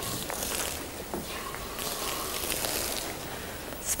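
Liquid nitrogen splashed onto a hard floor, hissing faintly as it boils off into gas.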